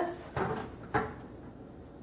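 Two short knocks about half a second apart as spice jars are handled and set against a kitchen counter.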